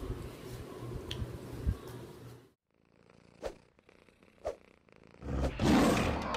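A small long-haired dog growling as it plays, a low steady rumble that cuts off suddenly about two and a half seconds in. After a near-silent gap with two faint clicks, a rising rush of noise swells near the end.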